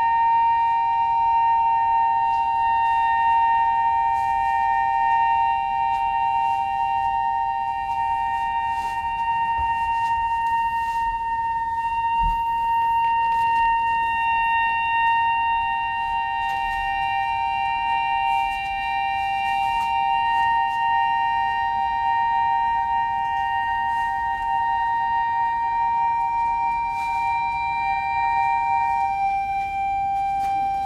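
Two long, high held notes sounding together from a contemporary chamber ensemble of clarinet, accordion and percussion. The lower note drops out about eleven seconds in and comes back about three seconds later, while the upper note holds almost to the end. Faint scattered taps and one soft low thump sound underneath.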